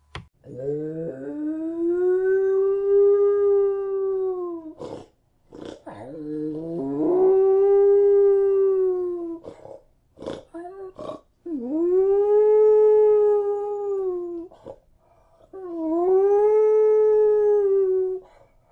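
A single canine howling: four long howls, each rising at the onset, held at a steady pitch and sliding down at the end. There are short sharp noises between the howls.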